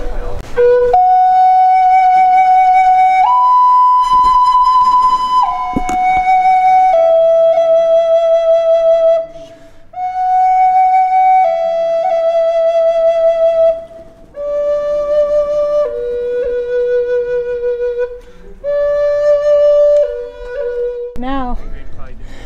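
A wooden end-blown flute playing a slow melody of long held notes, in phrases broken by short pauses.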